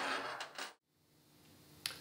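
A single sharp click at the start, then faint background fading into dead silence, with a small tick near the end.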